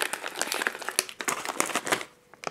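Plastic cookie packaging crinkling and rustling with irregular small clicks as fingers rummage through mini sandwich cookies, looking for an unbroken one.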